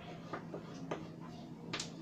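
Three short, sharp clicks, the last and loudest near the end, from hands handling a tape measure on fabric at a table, over a faint steady hum.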